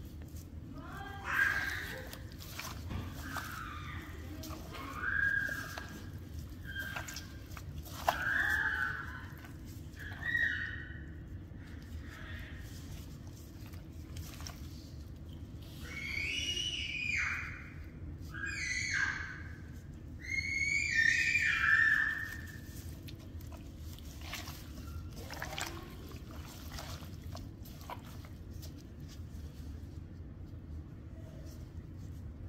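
A young child's high-pitched squeals and calls, repeated every couple of seconds, the longest and loudest a little past halfway, over a steady low hum.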